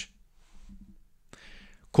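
A short pause in a man's speech, close to the microphone, with a faint murmur and then a quick breath in just before he starts talking again.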